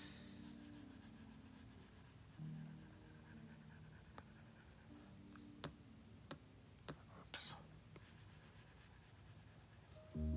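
Near silence with a few light clicks of a stylus tip tapping on a tablet's glass screen during drawing, and one short breathy hiss a little past the middle.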